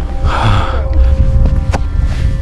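Wind buffeting the camera microphone with a loud, uneven low rumble, and one breath from the hiker about half a second in.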